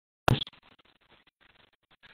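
A short, sharp scratchy crackle about a quarter of a second in, like something rubbing against the microphone. It trails off into faint, broken crackling on a line that is otherwise silent.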